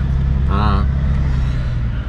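Steady low in-cabin drone of a 2001 Mercedes-Benz S320 CDI's straight-six turbodiesel and road noise while driving slowly, with a brief spoken syllable about half a second in.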